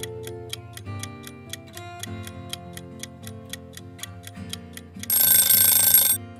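Quiz countdown timer ticking about three times a second over soft background music, then a loud buzzer-like alarm for about a second near the end, signalling that time is up.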